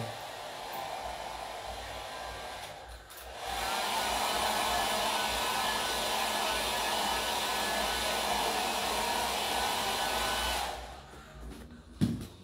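Hand-held hot-air dryer running steadily to dry a fresh coat of paint. It dips briefly about three seconds in, then runs louder and cuts off shortly before the end.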